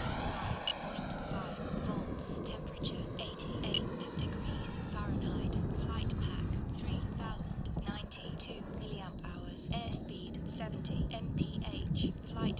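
Twin electric ducted fans of a large RC F-18 jet whining on a slow, low pass with full flaps out, the pitch falling as it goes by and fading quickly in the first couple of seconds. Wind noise on the microphone fills the rest.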